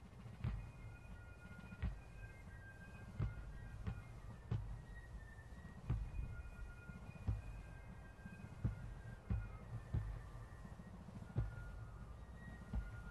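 Military band music during the posting of the colors: a bass drum beating slowly, about one stroke every second and a half, under faint held high notes.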